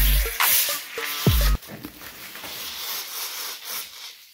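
A shaken plastic bottle of Coca-Cola Zero being uncapped: a sharp hiss of escaping gas at the start, then a steady fizz as the foam surges up the bottle.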